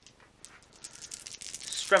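A handful of small plastic dice rattled in a cupped hand: a quick, thickening run of little clicks that grows louder toward the end, as the dice are shaken for a roll.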